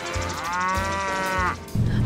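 A cow's moo, a sound effect: one long call that rises, holds and falls away about a second and a half in, over background music with a steady beat.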